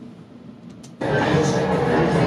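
A recording of restaurant background noise played from computer speakers: a dense, steady din that starts abruptly about a second in, after a faint click or two.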